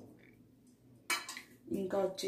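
A short metallic clatter about a second in from a stainless steel mixer-grinder jar as herbs are dropped into it by hand.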